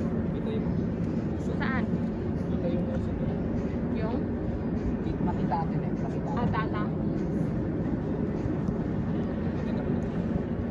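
Open-air ambience: a steady low rumble, with a few short snatches of indistinct voices of people talking in the background.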